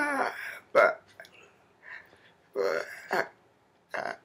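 A woman's wordless vocal sounds in short bursts. The loudest comes right at the start, its pitch sliding down. Shorter ones follow just under a second in, twice about three seconds in, and once at the end.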